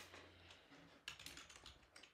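Faint typing on a computer keyboard: a quick run of keystrokes about a second in, entering a username into a login box.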